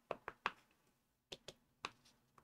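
A blending brush being dabbed into a Distress Oxide ink pad to load it with ink. It gives short, light taps: three in quick succession at the start, then three more in the second half.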